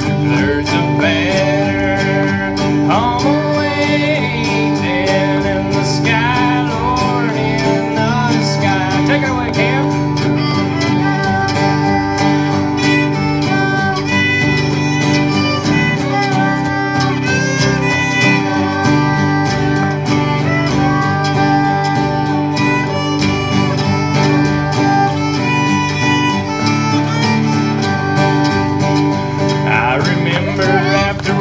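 Acoustic bluegrass band playing an instrumental break, with the fiddle out front over upright bass, acoustic guitar and mandolin. The lead line slides and wavers in the first part, then settles into steadier, shorter notes over the bass pulse.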